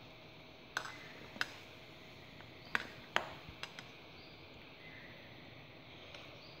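Spoon clinking lightly against the inside of a stemmed drinking glass while stirring ice cream into soda water: about six faint, scattered taps, the last around four seconds in.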